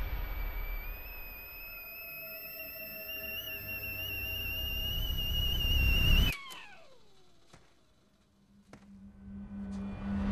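Horror-trailer sound design: a high, wavering, theremin-like tone slowly rises in pitch and swells over a low rumble, then cuts off abruptly about six seconds in. A falling glide fades almost to silence, and near the end a low hum starts to build.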